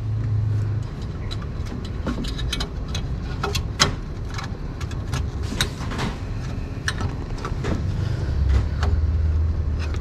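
Scattered small clicks and light rattles of a D1S xenon bulb and plastic headlamp parts being worked into place by gloved hands inside a car's wheel arch, over a low hum.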